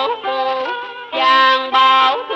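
Cải lương (Vietnamese reformed opera) music: a voice holding and bending long sung notes over instrumental accompaniment, between two lyric phrases.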